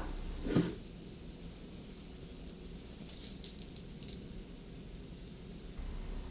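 Faint rustling of coat fabric being folded and handled by hand, a few short rustles about three and four seconds in, after a brief murmur from the voice near the start.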